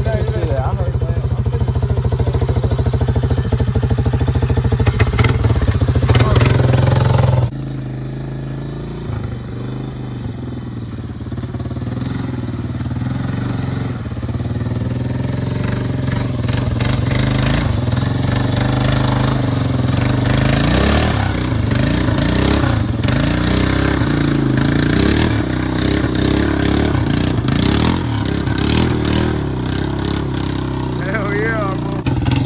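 ATV (four-wheeler) engine running loudly close by for the first several seconds, then after a sudden cut a four-wheeler revving as it drives through a muddy water hole, its engine pitch rising and falling, with splashing and clatter.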